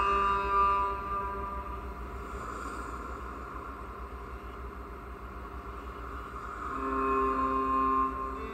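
A cello bowed in long held notes, quieter in the middle, with fuller, lower notes coming in near the end, over a steady low hum and hiss.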